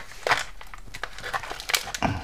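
Brown paper pouch being torn open and crinkled by hand: a run of irregular, sharp crackles and rips.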